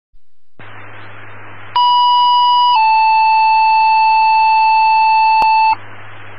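Fire department dispatch tones over a scanner radio feed: after radio hiss, a loud steady tone for about a second steps down to a slightly lower tone held for about three seconds. This is a two-tone page alerting the fire station to a call, and radio hiss returns after it.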